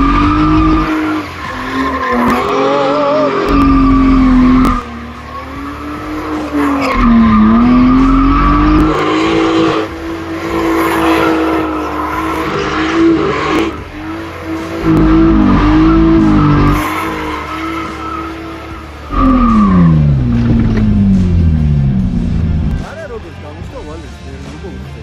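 Drift car's engine held at high revs while the car slides sideways, with the rear tyres squealing and the revs dipping and picking back up through the slides. About 19 seconds in, the revs fall away as the car slows.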